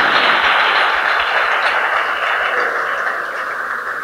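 Audience applauding, steady and dense, dying down near the end.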